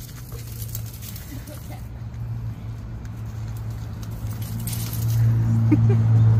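A dog running on gravel, its paws pattering faintly, over a steady low motor hum that grows louder about five seconds in.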